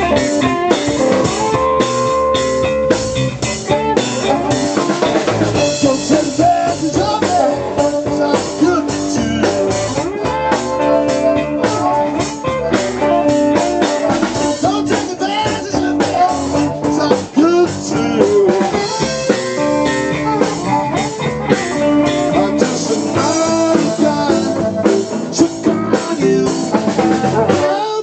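A blues-rock band playing live: drum kit, electric bass and a hollow-body electric guitar.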